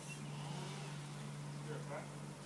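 A steady low mechanical hum from a motor, with a few faint, short rising squeaks near the end.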